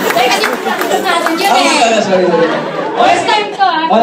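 Speech only: people talking into handheld microphones in a large hall, with overlapping chatter.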